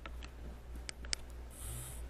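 A few faint clicks and handling noise from iVUE Vista camera glasses being handled at the microphone as the snapshot button on the frame is pressed, with a short hiss near the end, over a low steady hum.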